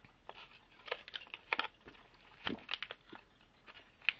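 Thin clear plastic crinkling and clicking in irregular bursts as it is handled and wiped clean.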